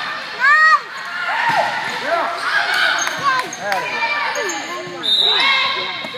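Volleyball rally in a gym hall: players' voices calling out in short shouts, with the sharp knocks of the ball being hit.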